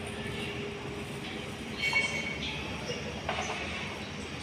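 Steady background noise of a packed crowd, with indistinct voices and movement, a brief high-pitched sound about two seconds in, and a short knock a little after three seconds.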